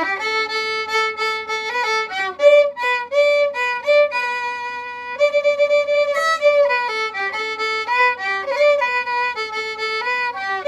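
Violin bowing a pop melody in sustained notes, with one long held note about three seconds in and quicker note changes in the second half.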